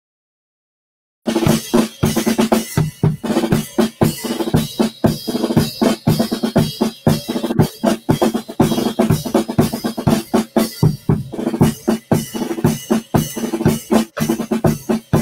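Drum kit played live: a dense, fast run of snare, bass-drum and cymbal hits that starts suddenly about a second in and keeps going.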